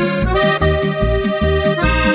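Instrumental break of a Slovenian folk-pop song: an accordion plays the tune and chords over a bouncing bass beat, with no singing.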